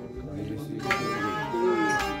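A bowed folk fiddle plays a gliding, wavering melody, with a single sharp knock about a second in.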